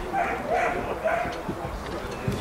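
A dog's high yips, three short calls in quick succession in the first half, with voices talking in the background.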